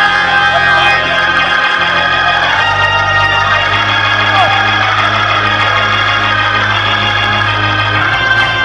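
Church organ holding sustained chords, its bass moving to a new note about two and a half seconds in, with worshippers' voices calling out underneath.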